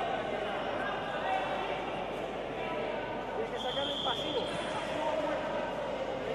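Voices talking in a large sports hall, with a short, steady, high whistle-like tone a little past halfway.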